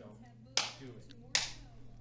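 Two short, sharp smacks a little under a second apart, each dying away quickly, over low room tone.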